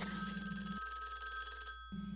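Telephone ringing tone on a call: a steady ring made of several held tones, cutting off sharply near the end as the call is answered.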